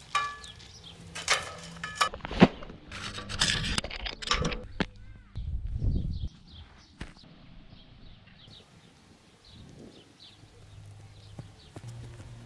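Football goal net being hung on the metal goal frame: a run of sharp clinks and rattles over the first few seconds as the net and its fittings knock against the crossbar and post, then it goes quieter with only faint high chirps.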